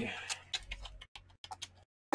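Faint, scattered clicks and taps of a cardboard card box being handled, with brief stretches of near silence between them.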